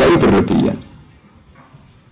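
A man's lecturing voice trailing off in the first moment, then a pause with only faint room tone.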